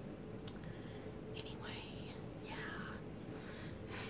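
A woman whispering or breathing a few soft, unvoiced words, about one and a half to three seconds in.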